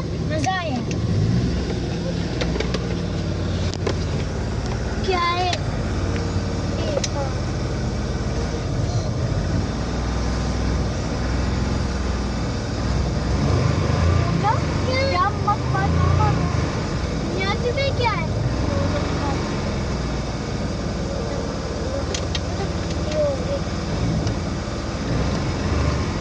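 Suzuki Mehran's small three-cylinder petrol engine running steadily, heard from inside the cabin, its sound rising briefly about halfway through.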